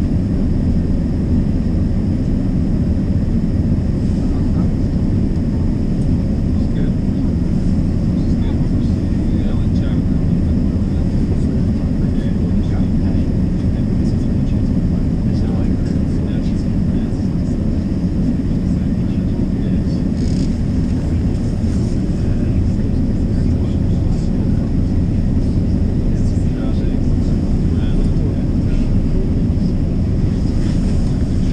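Steady low rumble inside a streetcar, heard from the passenger cabin, with faint scattered ticks and rattles over it.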